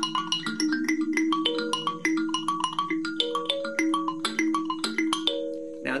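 Gourd-resonated kalimba (thumb piano) plucked with the thumbs: a melody of ringing notes, several a second, over low notes that keep sounding.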